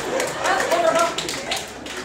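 A man's voice speaking in a large room, with a quick run of light taps or clicks under it, thickest in the first second.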